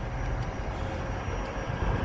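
Steady low engine rumble with a faint hiss, with no sudden events.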